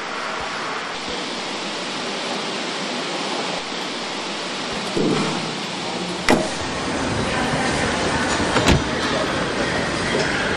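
Steady machine noise of a car-factory hall, with a few sharp knocks and clanks about five, six and nearly nine seconds in.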